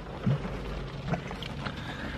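Rain falling on the roof and windows of a parked car, heard from inside the cabin as a steady hiss over a low rumble, with a few faint taps.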